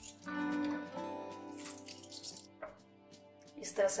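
Background instrumental music with held notes, under the faint wet squish and drip of boiled grated carrots being squeezed out by hand into a plastic colander.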